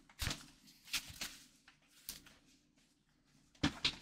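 A few soft knocks and rustles of packaging being handled: a playmat being rolled up and its long tube moved about. Short scattered sounds near the start, around a second in, just past two seconds and near the end.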